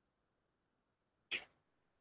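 A single short, sharp burst of breath noise from a person, about a second and a third in, against near silence.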